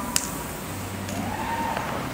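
A single sharp firecracker crack just after the start, over a steady background hiss.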